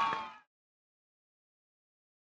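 Crowd noise and voices at a baseball field fade out within the first half second, then complete silence.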